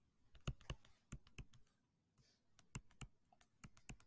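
Faint, sharp clicks and taps of a digital pen on a touchscreen while an equation is handwritten: about a dozen uneven taps, bunched in small clusters.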